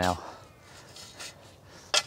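Faint scrapes of a steel spade blade working into lawn soil, a few short ones with the clearest near the end.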